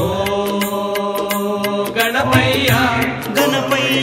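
Devotional song to Ganapathi (Ganesha) playing: sustained melodic notes over a steady percussion beat.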